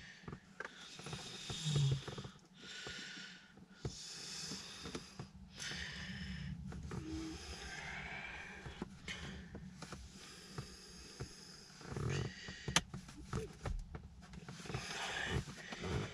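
Heavy breathing in and out, with soft rustling and a few sharp clicks from handling a plastic sun visor and its mounting clip.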